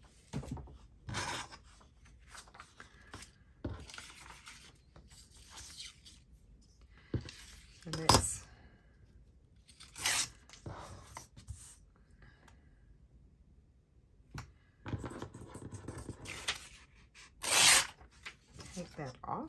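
Paper being torn along a steel ruler: an old book page ripped in a series of short pulls, with paper handling between them and a longer tear near the end. A single sharp knock about eight seconds in is the loudest sound.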